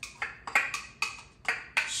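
Chopped onions being tipped from a cutting board into a pot, heard as a run of about six sharp wooden and metal taps and knocks in two seconds as a utensil pushes them off the board and strikes the board and pot.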